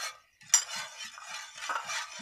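A steel spoon stirring and scraping around the inside of a steel pot of liquid, starting with a sharp clink about half a second in.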